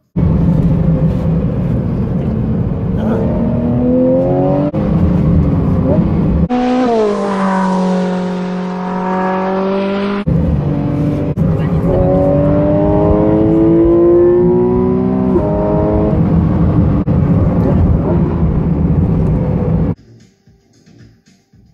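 A racing car engine accelerating hard through the gears, its pitch climbing and dropping back at each shift, with a few seconds of high, nearly steady revs in the middle.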